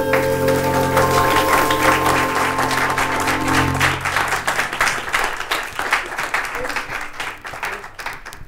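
A jazz combo holds its final chord while a live audience applauds. The chord dies away about halfway through, and the applause carries on alone, thinning out near the end.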